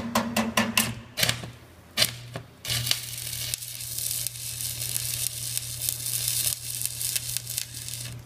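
Stick (shielded metal arc) welder: the electrode is tapped against the steel plate to strike the arc, giving several sharp crackles in the first second and a brief start near two seconds. It then holds a steady crackling, sizzling arc for about five seconds, with a low hum under it, while laying a tack weld on a T-joint.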